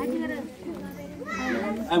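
Children's voices chattering in a seated crowd during a pause in a speech, with one higher child's voice standing out in the second half.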